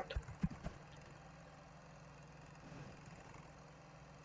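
A few light computer-keyboard keystroke clicks in the first second, then a faint steady low hum.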